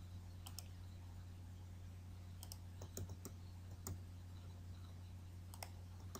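Computer mouse and keyboard clicks, about eight of them scattered at irregular intervals, some in quick pairs, over a steady low electrical hum.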